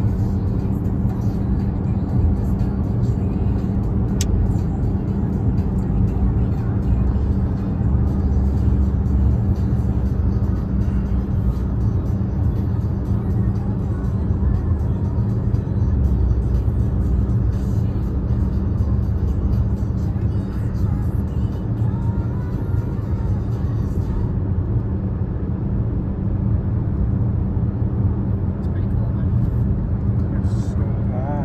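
Steady in-cabin road and engine noise from a car driving through a road tunnel: an unbroken low rumble with a constant hum.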